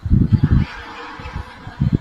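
Laughter: a quick run of short bursts at the start, a quieter stretch, then a few more bursts near the end.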